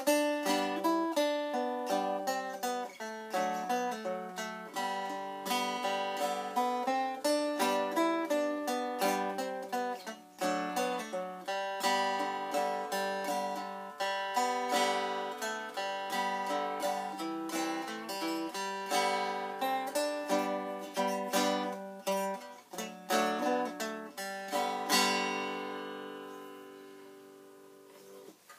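Three-string cigar box guitar in open G tuning (D-G-B) playing an old-time fiddle-style tune, picked note by note at a quick pace with some chords. Near the end a last chord rings and fades away.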